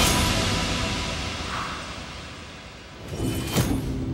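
Orchestral trailer music dying away under the title card, then a short rising whoosh that ends in a sharp hit about three and a half seconds in, followed by held low tones.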